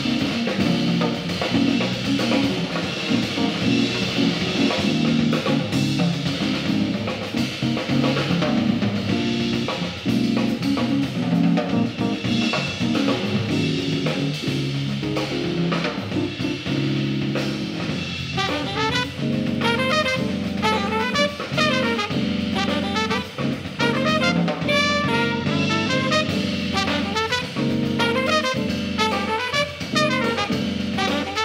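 Live jazz band playing, with drums, piano and bass guitar carrying the first part. About two-thirds of the way through, trumpet and alto saxophone come in together with held, vibrato-laden notes.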